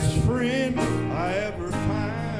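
Live country-style gospel worship music: electric guitar and bass guitar holding chords, with a voice singing a drawn-out, gliding phrase over them.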